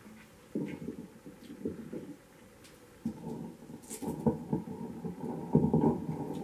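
Handling noise from a microphone and its stand being adjusted by hand: irregular dull bumps and rubbing with a few sharp clicks, growing busier and loudest near the end.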